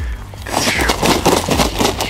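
Shot wild turkey's wings beating in a rapid flurry as the dying bird is lifted, a dense burst of flaps starting about half a second in.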